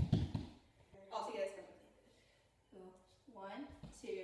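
Rapid stamping of socked feet on a hardwood floor for about half a second, followed by two short bursts of a girl's voice.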